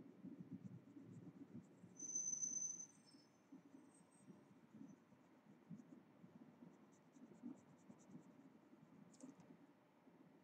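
Faint pencil scratching on paper as shading strokes are laid into a drawing, with a brief high-pitched tone about two seconds in and faint high ticks later.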